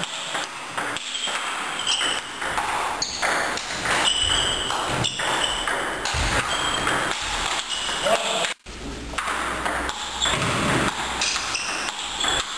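Table tennis rally: a celluloid ball clicking off paddles and bouncing on the table in irregular bursts of strokes, with chatter in the background.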